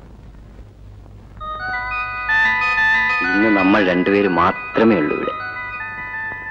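Background music from the soundtrack of an old film. After a low hum, sustained chiming, bell-like tones come in about a second and a half in. From about three seconds in, a voice with a strongly wavering pitch joins them.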